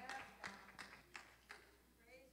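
Faint hand claps from the congregation, about three a second, dying away near the end.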